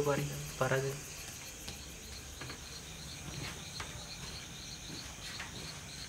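Night insects chirping steadily in a fast, even, high-pitched pulse, with a few faint light taps.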